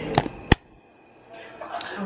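Speech trailing off, then one sharp click about half a second in, followed by a short near-silent gap before voices return faintly.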